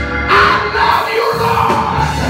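A man's voice singing and shouting into a microphone over loud live church music, swelling strongly about a third of a second in.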